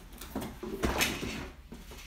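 A few knocks and rustles from kit parts and packaging being handled and set down, loudest about a second in.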